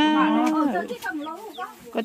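A person's voice in a sing-song delivery: one long held note, then falling, wavering phrases that fade toward the end.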